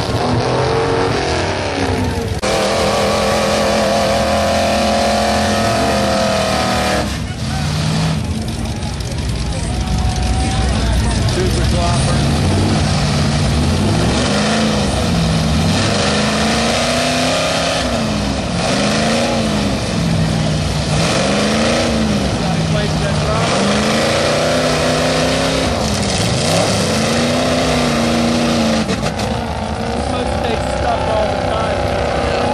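Engine of a big-tyred mud-bogging vehicle driving through a mud pit, its tyres churning mud. In the second half it is revved up and down in repeated surges about every two seconds.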